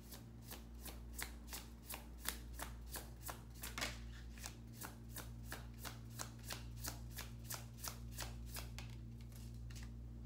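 A deck of tarot cards being shuffled overhand between the hands: a steady run of soft card slaps, about three a second, that stops near the end. A low steady hum lies underneath.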